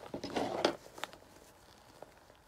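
Crinkling rustle of a newspaper-stuffed tablecloth sit-upon cushion being handled, lasting about half a second, followed by a couple of light clicks.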